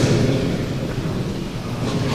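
Steady low rumbling noise of a large hall, with indistinct voices of people in the room.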